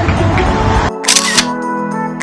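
Dense street-clip audio that cuts off abruptly about a second in, followed by a short camera-shutter click sound effect, then background guitar music starting.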